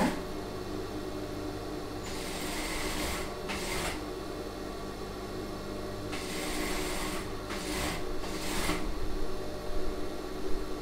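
Industrial single-needle sewing machine stitching slowly in several short runs over a steady motor hum, sewing piping onto fabric.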